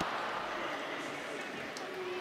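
Steady, faint murmur of a crowd in a sports hall, with no distinct impact.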